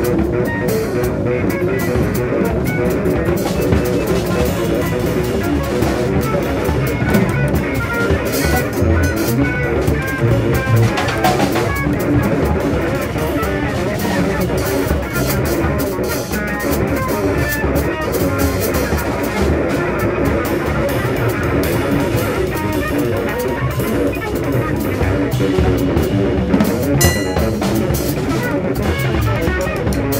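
Live instrumental trio music: a Teuffel Tesla electric guitar played over a drum kit and double bass, in a steady, continuous groove.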